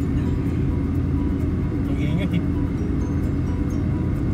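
Steady road and engine noise of a car driving, heard from inside the cabin, with a brief voice about two seconds in.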